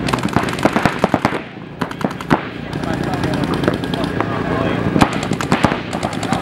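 Paintball markers firing in rapid bursts of sharp pops, with a brief lull about a second and a half in.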